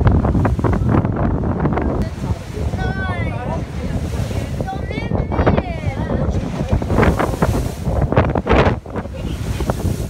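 Wind buffeting the microphone of a camera on a moving boat, over the rush of choppy sea water and a low rumble.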